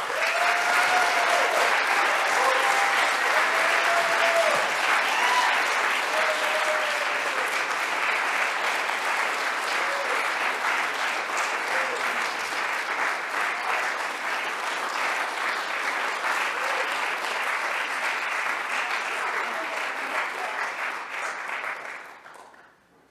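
Audience applauding, loudest at the start and slowly dying down, with a few voices calling out in the first few seconds; the applause stops suddenly at the end.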